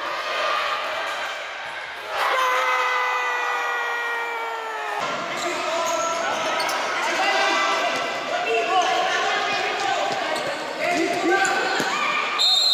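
Futsal play in an echoing sports hall: the ball and players' shoes on the hard court, with shouting voices and one long held call about two seconds in.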